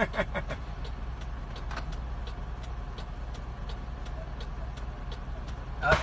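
A motor vehicle's engine running steadily with a low rumble, with light regular ticks about four times a second over it.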